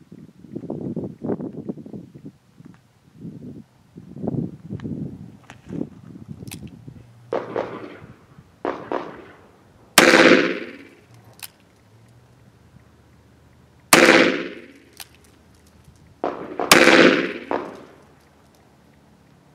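.357 Magnum revolver firing three 158-grain rounds, about four and then two and a half seconds apart, each report ringing out briefly. Quieter, uneven sounds come in the seconds before the first shot.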